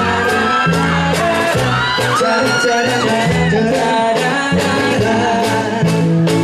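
Live band playing a pop song: male vocals over acoustic guitar, bass and drums, with a steady beat and sung notes that glide between pitches.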